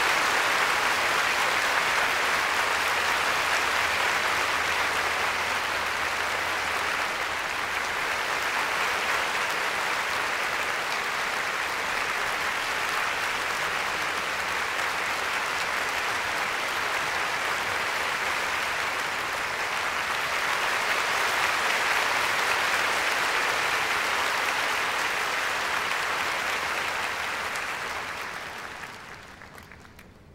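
A large concert audience applauding steadily at the end of a performance, dying away near the end.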